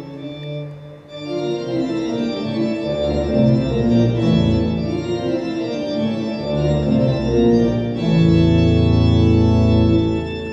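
Organ music played back through Martin Logan Clarity hybrid electrostatic loudspeakers and picked up in the room: sustained chords over deep low notes. The music dips briefly about a second in, then swells and ends on a loud, full held chord.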